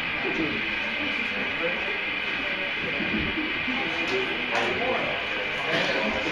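Indistinct voices of a crowd chatting, over a steady hiss from the stage amplifiers between songs.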